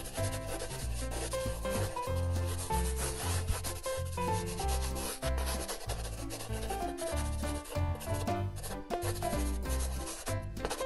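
A flat paintbrush rubbing and scrubbing on paper in quick, scratchy strokes, over background music with a stepping bass line and melody.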